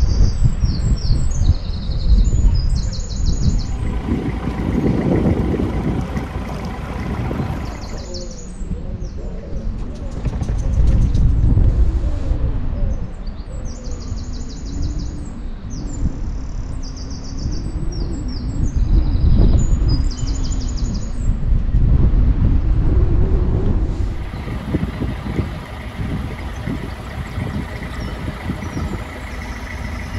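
Songbirds singing in repeated short trills over a loud, steady low rumble.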